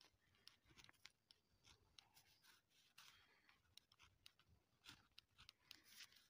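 Faint scratching of a pen writing on lined notebook paper, a run of short strokes as words are written out.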